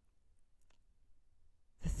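Near silence in a pause of a woman's spoken narration, with one faint click, perhaps a mouth click, about a third of the way through; her voice resumes near the end.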